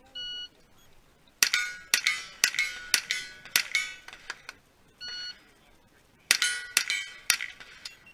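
A shot timer beeps, then about five quick rifle shots each ring a steel target plate. About five seconds in, a second timer beep starts another string of three shots on ringing steel.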